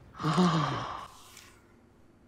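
A person's breathy, drawn-out sigh, falling in pitch and lasting under a second.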